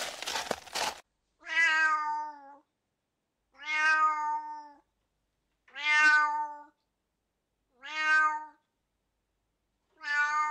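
Tabby cat meowing four times, each meow about a second long at a steady pitch, spaced about two seconds apart.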